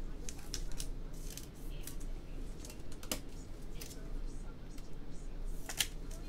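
Trading cards being handled and flipped through by gloved hands: a scattered run of short clicks and card slides, with a sharper snap about three seconds in and another near the end.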